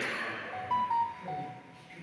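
A rushing noise fades out at the start, then a short run of four or five clear, pure high notes steps between a few pitches about halfway through.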